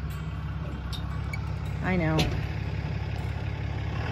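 Dodge Ram pickup's engine idling steadily, a low even hum.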